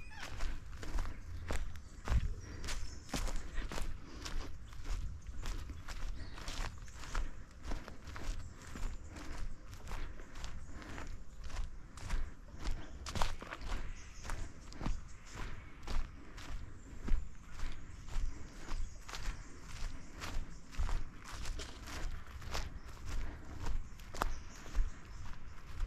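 A hiker's footsteps on a forest track at a steady walking pace, about two steps a second.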